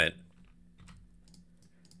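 A few faint computer keyboard keystrokes, scattered short clicks over about a second.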